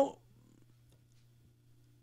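The tail of a man's spoken word into a microphone, then a pause of under two seconds with only a faint, steady low hum.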